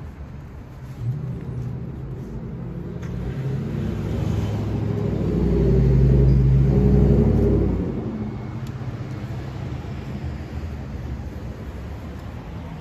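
A motor vehicle driving past on the street, its engine rumble building, loudest about six seconds in, and fading away by about eight seconds, over steady street noise.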